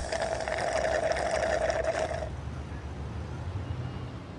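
A long slurp through a drinking straw from a large soda cup, stopping about two seconds in, followed by faint street background.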